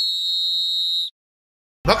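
Referee's whistle sound effect marking the kick-off: one long, steady, high-pitched blast that cuts off about a second in.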